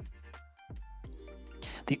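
Background music with low sustained bass notes, held tones and regular light percussive ticks. A man's voice comes in at the very end.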